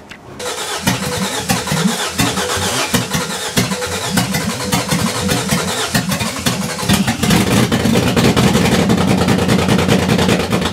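Ford Barra 4.0-litre straight-six being cranked by its starter for several seconds, at about three to four pulses a second, then catching about seven seconds in and running steadily.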